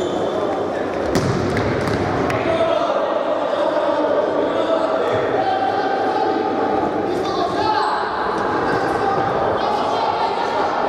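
Futsal ball being kicked and struck on a sports hall court, with several sharp thuds about a second in. Players call out in the echoing hall throughout.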